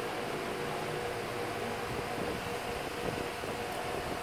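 Steady background room noise: an even hiss with a faint, steady hum running under it.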